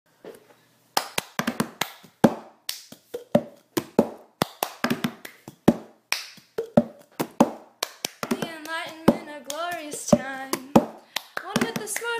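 Cup-song rhythm: hand claps and a plastic cup tapped, slapped and lifted on stone paving in a repeating pattern. About eight seconds in, a voice starts singing over the beat.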